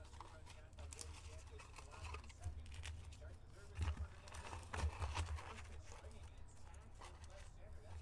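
Faint handling of stacks of plastic trading-card sleeves: soft rustles and a few small clicks as they are sorted by hand.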